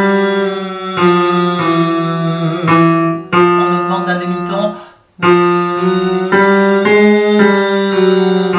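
Electric keyboard playing a chromatic scale, one note after another in semitone steps, with a voice humming along with the mouth closed. The sound breaks off briefly about five seconds in, then the notes carry on.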